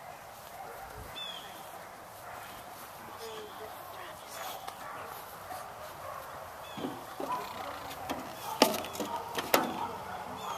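Clunks and knocks from a garden tractor's sheet-metal body and seat as a person climbs on and settles into the seat, the two loudest near the end about a second apart. Behind them, quiet outdoor air with a few faint bird chirps.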